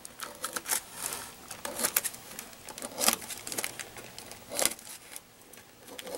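Scissors snipping relief cuts into thin laminating film at the edge of a foam tail surface: a run of short, crisp snips at an uneven pace.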